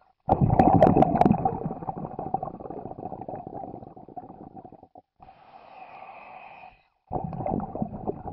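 Underwater bubbling and gurgling sound effect: a sudden loud burst with sharp crackles that fades over about four seconds, a short steadier stretch, then a second burst near the end.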